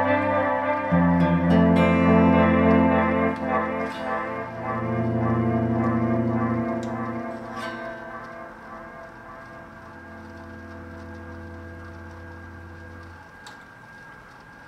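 Electric guitar, a Fender Telecaster played through a T-Rex Replicator tape echo pedal into a Peavey Invective amp: a few sustained chords ring out with echo. The sound then gradually fades, dying to a quiet held tone over the last several seconds.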